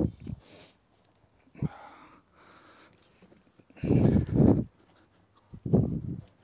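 A man's heavy, effortful breathing: several hard breaths and grunts of exertion, the longest and loudest about four seconds in.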